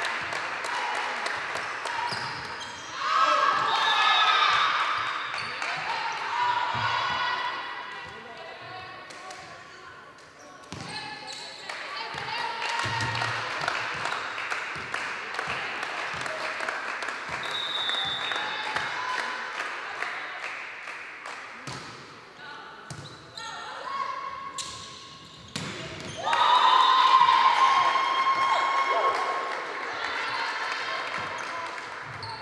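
Volleyball play: the ball smacked by hands and bouncing on the hall floor in sharp repeated hits, with players' and spectators' voices. Voices rise loudly twice, a few seconds in and again near the end, where they are loudest.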